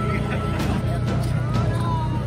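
Low steady engine rumble of an SUV towing a parade float trailer past at walking pace, mixed with people talking and music.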